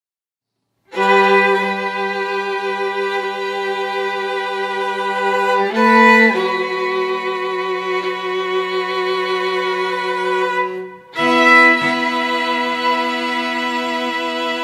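String quartet of violins and cello playing slow, sustained bowed chords. The music starts about a second in out of silence, moves to a new chord about six seconds in, and after a brief break near eleven seconds goes on with another held chord.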